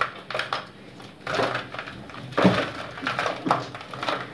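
Gritty scraping and crunching as limescale and muddy sludge are dug by hand out of an electric water heater tank, in irregular bursts.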